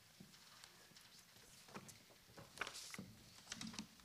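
Near silence: room tone with a few faint, irregular knocks and clicks in the second half.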